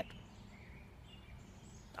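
Quiet outdoor ambience: a low steady rumble of background noise with a couple of faint, brief high bird chirps.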